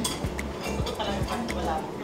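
A metal fork clinking and scraping against a ceramic plate as it picks up noodles, in a few sharp light clicks. Background music with a steady beat plays under it.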